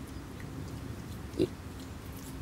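A piglet gives one short grunt about one and a half seconds in.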